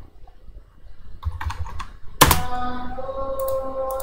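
Computer keyboard keystrokes as a distance is typed into a drafting program: a short run of key clicks a little past a second in, then a sharper key strike at about two seconds. A steady, held pitched tone follows that strike and runs to the end.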